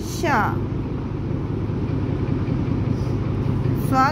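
A steady low rumble of background noise, with a voice briefly drawing out a falling syllable at the start.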